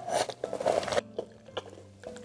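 Close-up chewing of very tender soy-sauce braised pork belly. A busy run of chewing sounds fills the first second, then it turns fainter and sparser.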